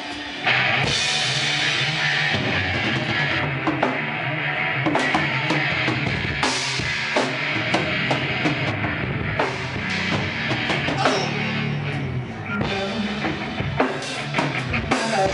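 Live heavy rock band playing loudly, the drum kit with its bass drum to the fore over bass guitar. The full band comes in hard about half a second in.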